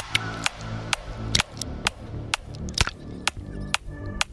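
Background music with a steady drum beat, about two beats a second, over a sustained low bass.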